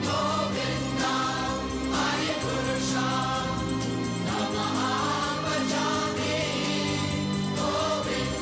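Devotional choral singing of sustained, melodic lines over a steady instrumental drone, with a light, regular beat.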